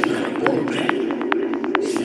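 Psytrance music: crisp hi-hat ticks on a steady beat under a warbling synth line, with a rising noise sweep near the start and another near the end.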